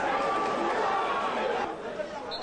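Football stadium crowd noise: many voices shouting and talking at once in a steady din.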